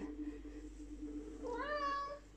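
Domestic cat meowing once near the end, a single meow that rises and then holds its pitch: a demanding call for attention.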